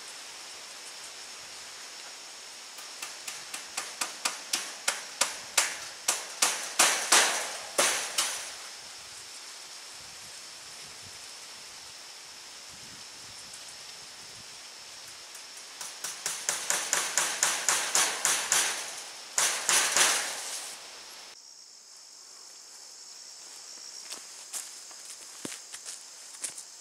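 Hand hammer striking in two quick runs of about three blows a second, each run growing louder, fastening welded-wire fencing to the coop's wooden pole frame.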